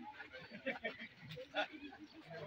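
Indistinct voices of people talking at a distance, with one short, sharp, loud sound about a second and a half in.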